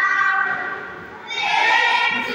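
A children's choir singing, holding a long note that fades away about a second in before the next phrase starts strongly.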